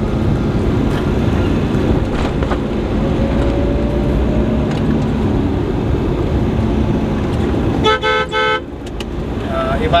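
Road and engine noise heard from inside a moving car, with a vehicle horn giving two short toots about eight seconds in.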